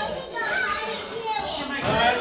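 Overlapping chatter of children's and adults' voices echoing in a large hall, with no single clear speaker.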